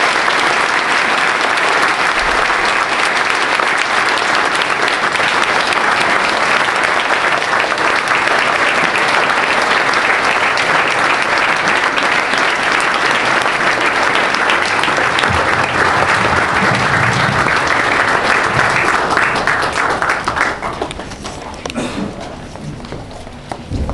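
Audience applauding, loud and steady, dying away near the end.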